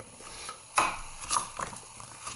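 Handling noise from a pocket shot, its orange plastic ring and blue latex pouch turned in the hands: a few light plastic clicks and rustles, the loudest about three-quarters of a second in.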